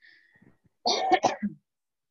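A short cough, a few quick hacks in one burst about a second in.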